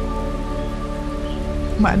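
A steady background track: a sustained drone of held tones with a soft, even hiss like rain. A woman's voice starts talking near the end.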